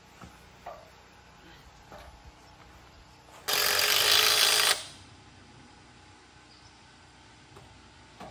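Power drill driving a screw into a wooden roof beam in one steady run of a little over a second, about halfway through, with a few faint knocks of handling before it.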